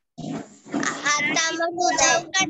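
Speech: a child's voice talking over a video call.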